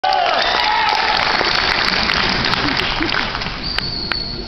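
Audience applauding in a large hall, with a voice over the clapping in the first second; the applause eases slightly near the end.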